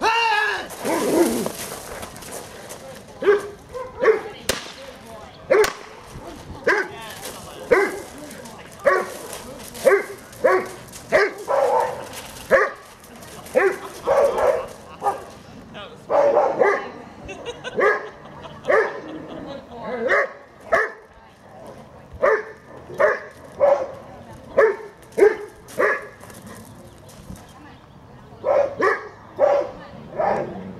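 A Doberman barking over and over on the leash, short barks about one a second, with a brief lull shortly before the end.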